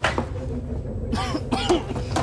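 A person coughing and clearing their throat in a series of short bursts starting about a second in, over a steady low hum.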